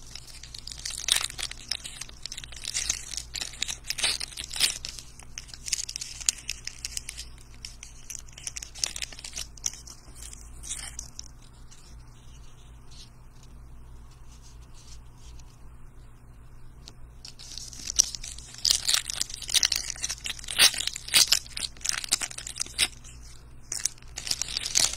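Baseball card pack wrappers crinkling and tearing as 2022 Diamond Kings packs are opened by hand, with cards being handled and shuffled. The crackling is busy in the first half, eases off for several seconds, then picks up again near the end.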